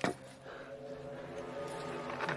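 Film score of sustained, steady tones, opening with one brief sharp sound that falls quickly in pitch.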